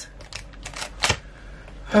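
A few light clicks and crinkles of plastic treat packaging being handled, the loudest about a second in.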